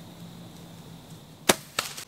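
Compound bow shot at a deer: one sharp crack about one and a half seconds in, then a shorter snap a moment later.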